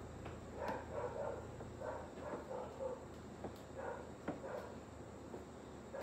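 Faint, intermittent rubbing and soft squeaks of a rubber balloon being pressed and rolled through wet acrylic paint on a canvas, with a few tiny clicks.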